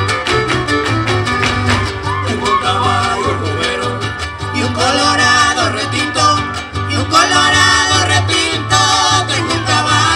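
Son huasteco played live by a huasteco trio: a violin melody over fast strummed jarana huasteca and huapanguera chords, with a steady bass pulse of about two beats a second.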